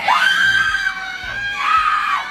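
A woman screaming: one long, high-pitched scream that wavers and rises again near the end.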